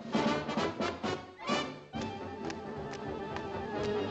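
Orchestral dance music with brass, trumpets and trombones, in a swinging big-band style, with a sharp accent about a second and a half in.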